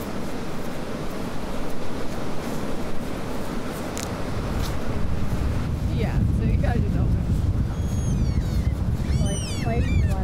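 Wind and surf on an open beach, with a heavier low wind rumble on the microphone from about six seconds. Near the end, a run of high, gliding gull calls.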